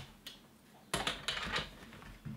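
A sharp click about a second in, followed by a few lighter clicks and rattles, as the Came-TV 7800 gimbal's handle bar is set down onto the tops of two light stands.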